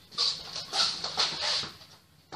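A dog whimpering: about five short, high-pitched whines in quick succession.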